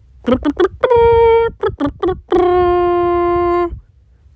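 A voice singing two short phrases, each a few quick syllables ending on a long held note at a very steady pitch. The second note is lower and lasts longer.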